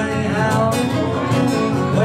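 Live acoustic song: steadily strummed acoustic guitar with a harmonica line and a little singing over it.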